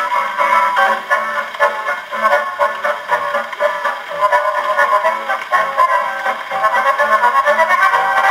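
Portable wind-up gramophone (patefon) playing an instrumental dance tune from a 78 rpm record through its acoustic soundbox: a thin, mid-heavy sound with little bass and a faint surface hiss.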